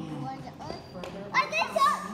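Children's voices, with one child calling out loudly in a high pitch in the second half, over a low steady hum.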